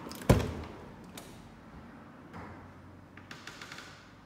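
Wooden door being opened: one loud thump about a third of a second in, then a couple of soft clicks and a quick run of rattling clicks near the end.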